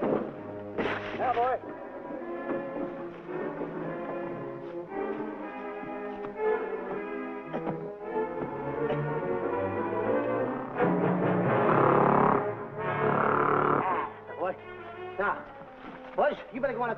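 Orchestral film score led by brass, growing louder about eleven seconds in. A short vocal cry comes about a second in.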